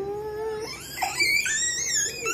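A toddler whining in a held, wavering cry that rises about halfway through into a high-pitched squeal. She is fussing at having her hair brushed.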